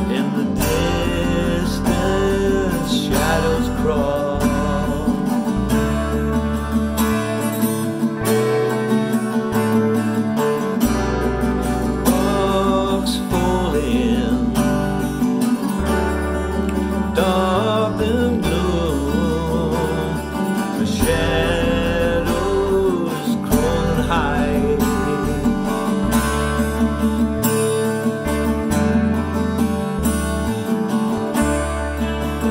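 Acoustic guitar strummed in a steady rhythm, accompanying a man singing a song.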